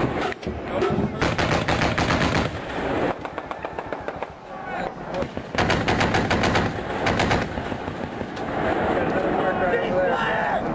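Automatic gunfire in two long bursts, one about a second in and one just past the middle, with scattered shots and echoing in the quieter stretches between.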